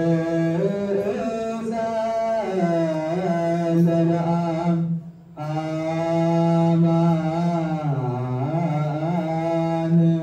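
Men's voices singing an Ethiopian Orthodox mezmur (hymn) unaccompanied, in long drawn-out phrases with winding melismatic turns, breaking for a breath about halfway through.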